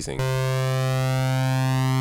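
Kepler Exo software synthesizer holding one steady note that starts a moment in, its two oscillators set to the same tuning so they phase against each other, giving a moving, washy sweep through the upper harmonics.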